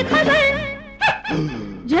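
Hindi film song music: a held note with vibrato fades over the first second. About halfway through comes a sudden short sound sliding down in pitch, and singing starts again with a rising glide at the very end.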